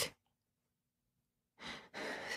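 Near silence, then about one and a half seconds in, a person's audible breath drawn in through the microphone.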